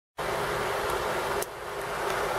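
Steady room noise: a constant hiss with a low hum, with a single click about one and a half seconds in.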